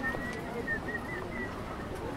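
A bird calling in short, high, thin notes: one slightly rising note, then a quick string of short chirps, over the steady background of people walking outdoors.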